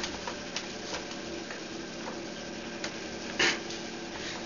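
Scattered faint clicks and rustles of a person shifting and straining in a chair, with a short hiss, like a sharp breath, about three and a half seconds in.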